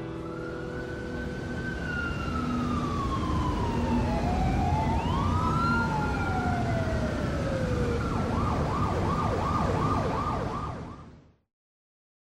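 Several sirens wailing at once over a steady low rumble, their pitches sliding slowly down and up and crossing one another. Near the end one switches to a fast warble, about three cycles a second, before everything fades out quickly.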